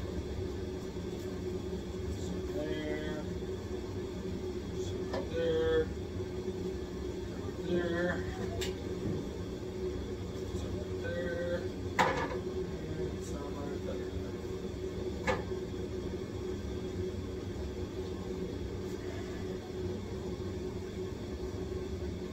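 A steady hum with one held tone, broken by a few short murmured vocal sounds and three sharp knocks, the loudest about twelve seconds in.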